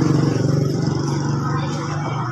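Small motorcycle engine running at a steady idle, with a fast, even pulse to its note.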